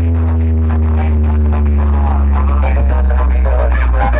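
Electronic dance music played very loud through a large outdoor DJ speaker stack, with one deep bass note held steady and a higher tone held above it; a busier melody comes in near the end.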